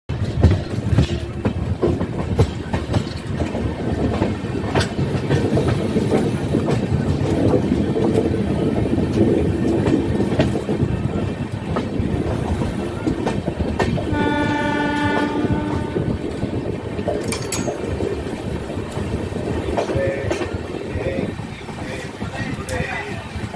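Running noise of an Indian Railways express coach heard at its open door: a steady wheel-on-rail rumble with scattered sharp clicks. About fourteen seconds in, the locomotive up ahead sounds a single horn blast of about a second and a half.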